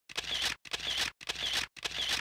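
A mechanical sound effect repeated as identical half-second bursts, about two a second, four times in a row.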